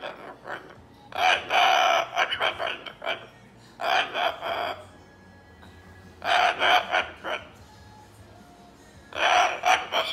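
Moluccan cockatoo babbling in mumbled, speech-like bursts that imitate talking, four bursts of about a second each with short pauses between.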